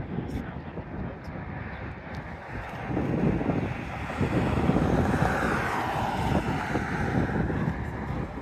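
Outdoor traffic noise: a vehicle going by, growing louder about three seconds in, with wind rumbling on the microphone.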